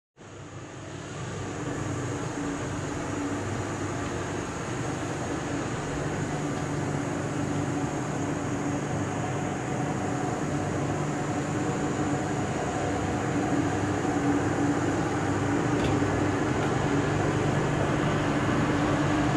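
Steady rushing of the fast-flowing, flooded Orange River, with a steady low hum running through it, growing gradually louder.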